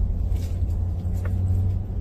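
Steady low rumble of a car being driven, heard from inside the cabin.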